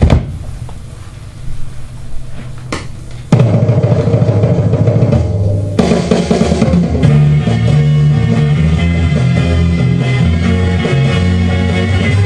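Northern soul record playing on a turntable: a quiet opening with a couple of sharp hits, then the full band comes in loudly about three seconds in.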